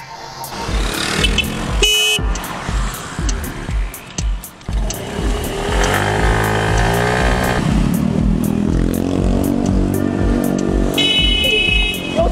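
A car horn honking, a short blast about two seconds in and another near the end, from a sedan overtaking a scooter that has slowed for a pedestrian, with street traffic under background music with a steady beat.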